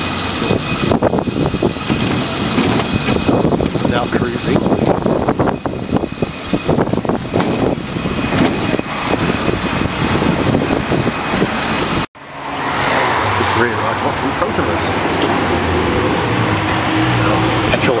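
Rattling and road rumble from a moving electric-assist pedicab, with many irregular knocks. About two-thirds of the way in the sound cuts off abruptly, and a steady low engine hum from a car follows.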